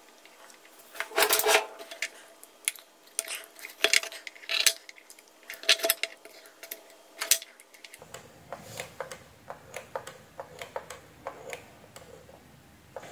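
Light metallic clinks, taps and clicks of small parts and a hand tool being handled on a wooden board, scattered and irregular, loudest in the first few seconds.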